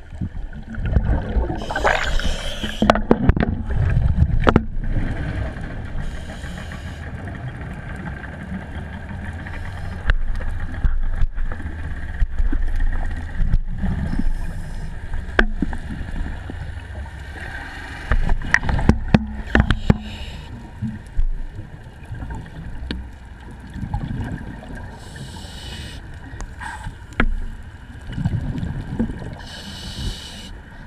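A boat's engine running with a steady low rumble, with water noise and brief hissing surges every few seconds.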